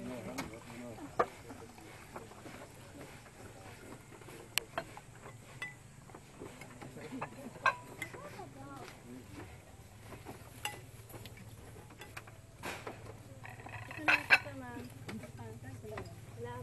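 Cutlery and dishes clinking at a meal table in scattered sharp clicks, the loudest a quick pair near the end, over faint background voices.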